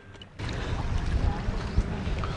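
Wind buffeting the microphone over a steady rushing noise, starting abruptly about half a second in.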